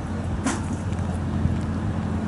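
Steady low rumble of distant road traffic, with a brief noise about half a second in.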